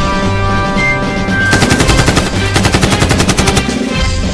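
Machine-gun fire sound effect: one rapid burst of shots from about a second and a half in, lasting about two seconds, over background music.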